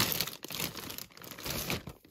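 Clear zip-top plastic storage bags crinkling irregularly as a hand rummages through and shifts them in a tote.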